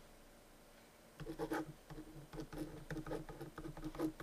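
Felt-tip marker writing on paper: a run of short, faint scratching strokes that start about a second in.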